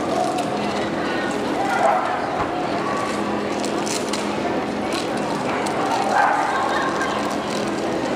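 Indistinct voices and a steady hum echoing in a large indoor hall.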